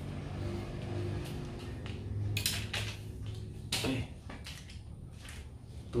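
A few sharp clicks and knocks from a spinning rod and reel being handled, clustered about two seconds in and again later, over a low steady hum.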